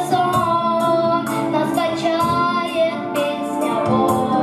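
A boy singing a Russian song into a microphone, part of a children's duet, with musical accompaniment underneath.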